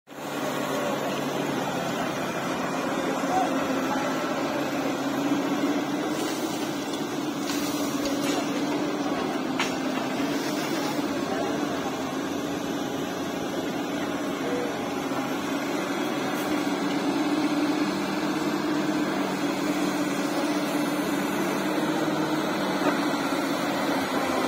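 Construction-site noise: a steady machine engine hum with indistinct voices of workers talking.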